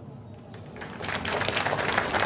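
Audience applause that starts about a second in and grows louder.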